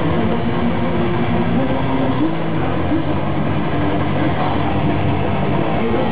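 Heavy metal band playing live: distorted electric guitar, bass and drums in a dense, unbroken wall of sound. The recording has no treble and sounds dull and muffled.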